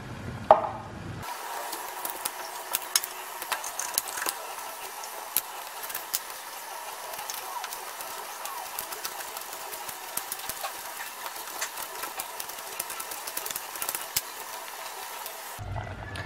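Knife dicing raw green mango on a plastic cutting board: irregular light clicks of the blade striking the board over a steady hiss, with one louder knock about half a second in.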